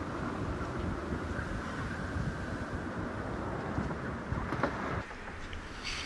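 Gale-force wind rushing over the boat and buffeting the microphone, a dense fluctuating roar. About five seconds in it drops abruptly to a quieter sound with a few light ticks.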